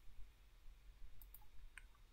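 Faint low hum with a few small clicks in the second half from a computer mouse as the document is scrolled.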